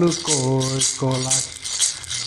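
A red hand-held rattle shaken in a steady beat, about four shakes a second, keeping time for a song. A man's voice sings two short falling notes in the first half.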